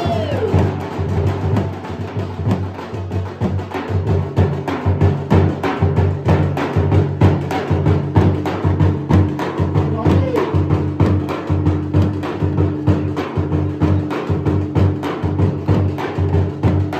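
Two large dhol drums beaten with sticks in a fast, continuous rhythm, deep booming strokes layered with sharp cracks, as dance accompaniment.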